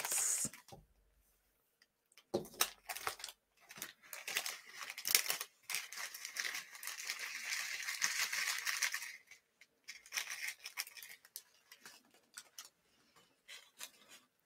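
Cardstock and clear cellophane handled while a shaker card is put together: crinkling and rustling with small clicks and taps, and a longer scratchy rustle in the middle.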